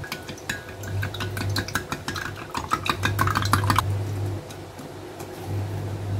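Raw eggs being beaten in a glass jug: a utensil clicks rapidly against the glass, then stops about four seconds in.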